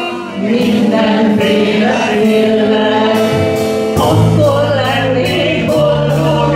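A woman singing held notes with a live band of electric guitar, bass guitar and drums, over a steady beat of cymbal strokes; the bass notes grow strong about four seconds in.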